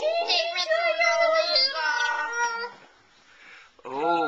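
Children's voices making a long, wavering sung or wailed sound that steps down in pitch, lasting about two and a half seconds and followed by a short pause.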